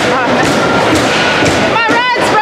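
Ice hockey rink noise from the stands: thuds and knocks of puck and sticks against the ice and boards over a steady hall din of spectators' voices, with a voice shouting near the end.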